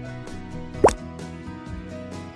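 Light background music with one short cartoon sound effect a little under a second in: a quick upward-gliding plop that marks a scene change.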